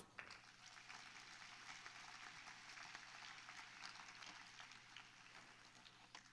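Faint applause from a large audience, an even patter that thins out near the end.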